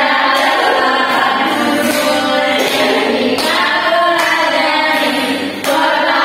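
Several voices singing a melody together, choir-like, loud and continuous.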